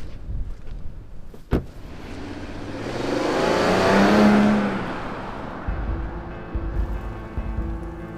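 A car driving past, its tyre and engine sound rising to a peak about four seconds in and then fading away. A sharp knock comes just before it, and background music with steady tones comes in near the end.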